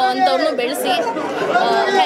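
Speech: a woman talking into press microphones, with the chatter of other voices behind her.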